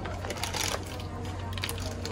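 Outdoor ambience with faint voices of people nearby, a scattering of light clicks and taps, and a steady low hum underneath.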